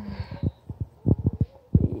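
Irregular low thumps, about a dozen in two seconds, from the handheld camera's microphone being jostled as she walks, with a brief faint hiss at the start.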